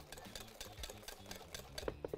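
Wire balloon whisk beating a thin liquid muffin batter of eggs, sugar, oil and juice in a glass bowl. Its wires make quick, faint, continuous clicking against the glass.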